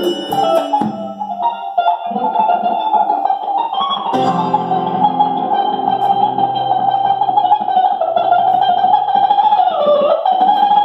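Live improvised band music: a few sharp drum and cymbal hits in the first second, then a long sustained guitar note held over lower steady tones.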